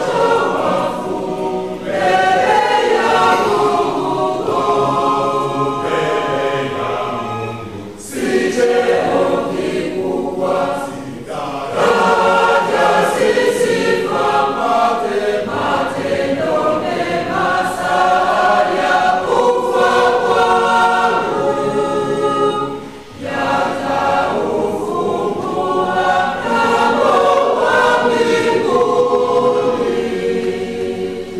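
Church choir singing a verse of a Swahili funeral hymn in long sustained phrases, broken by a few short pauses.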